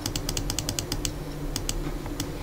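A quick run of sharp clicks at the computer, about ten in the first second, then two more near the end, over a steady low hum.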